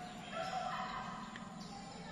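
A domestic chicken calls briefly in the background, one short pitched call about half a second in, over faint outdoor background.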